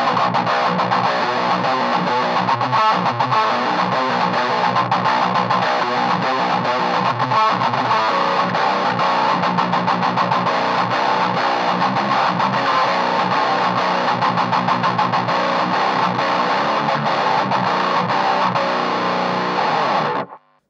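A heavily distorted electric guitar playing a djent riff through a high-gain Revv amp, set for a dry, mid-forward tone with the low end cut back. It is one continuous riff that stops abruptly at the end.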